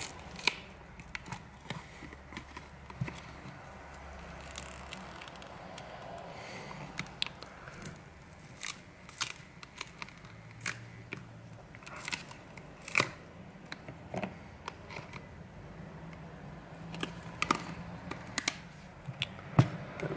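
Plastic back cover of a Realme 5 phone being pried off the frame with a pry tool: irregular sharp clicks and snaps with light scraping as the back is worked loose.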